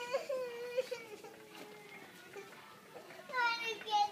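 A small child's high-pitched, drawn-out whining cry, no clear words. It fades about a second in and rises again, louder and higher, near the end.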